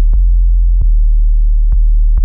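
Miami bass music: a loud, sustained sub-bass tone holds steady under three short, sharp electronic clicks spaced about a second apart.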